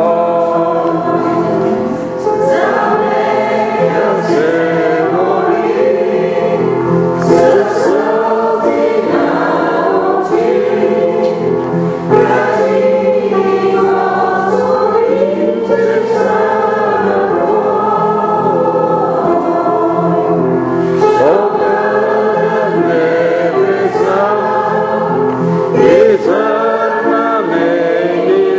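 A congregation singing a hymn together, voices in unison and held notes, steady and continuous.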